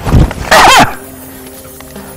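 A short loud cry that rises then falls in pitch, about half a second in, over background music with steady held notes.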